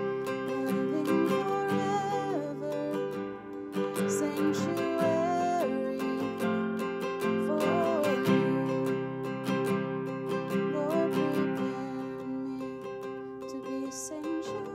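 Nylon-string classical guitar, capoed at the fifth fret, strummed in a steady easy pattern over simple open chords, with a woman singing the melody along with it.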